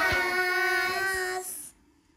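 Children singing together, holding one steady final note that fades and stops about a second and a half in.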